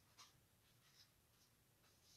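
Near silence with a few faint rustles of paper: pages of a prayer book being turned by hand.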